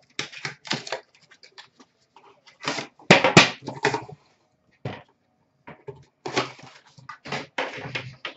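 Foil card-pack wrappers crinkling and tearing, and trading cards being handled, in irregular bursts. A few louder knocks and rattles come around three seconds in, as a metal card tin is set down and handled.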